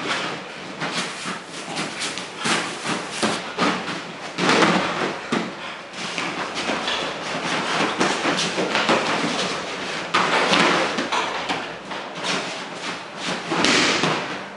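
Two people grappling and throwing each other on a padded mat: scuffling feet, rustling uniforms and repeated thuds of bodies hitting the mat. The loudest thumps come about four and a half, ten and a half and thirteen and a half seconds in.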